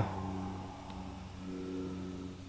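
Faint, steady low mechanical hum with several pitches, swelling slightly about one and a half seconds in.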